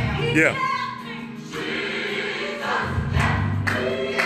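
Gospel music with a choir singing over a recurring deep bass, playing in a reverberant room as accompaniment to a praise dance.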